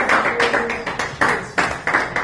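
Congregation clapping hands in a steady rhythm, about four claps a second, with faint voices beneath.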